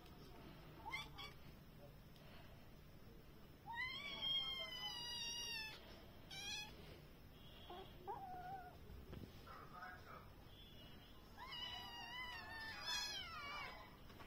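A kitten meowing: a long, high call about four seconds in, a short one just after, and a run of several calls near the end.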